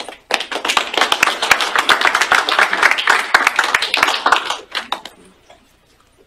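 Audience applauding: many hands clapping together, starting almost at once and dying away after about five seconds.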